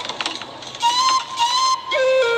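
A few short clicks, then a flute melody starts about a second in, playing a bright stepping phrase as the commercial's background music.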